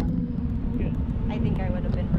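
Wind buffeting the microphone high up on a parasail, a steady low rumble with a faint held hum underneath. Faint voices come through about a second and a half in.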